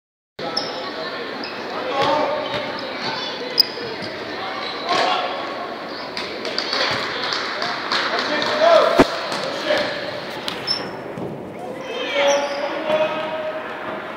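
Basketball game on a hardwood gym court: the ball bouncing as players dribble, short high sneaker squeaks, and spectators talking and calling out, all echoing in the large hall. A sharp thud about nine seconds in is the loudest sound.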